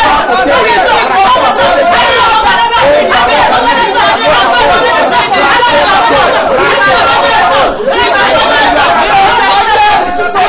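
A man and a woman praying aloud at the same time, their voices overlapping, loud and without a pause.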